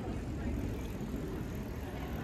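City street ambience: a steady low rumble of traffic with faint voices of people nearby.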